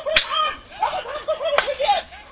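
Two sharp cracks about a second and a half apart, over a high-pitched voice with short rising and falling sounds that repeat.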